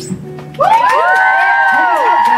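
The last notes of an acoustic song fade, then an audience breaks into cheering and high-pitched screams about half a second in.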